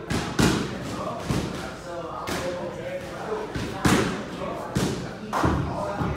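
Heavy thuds in a boxing gym, about six, coming unevenly roughly once a second, over the murmur of voices in the background.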